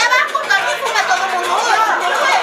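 Several people talking over one another in lively, overlapping chatter.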